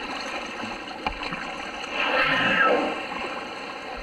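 Water splashing and rushing around a sea kayak, with a brief knock about a second in and a louder rushing whoosh about two seconds in that lasts about a second.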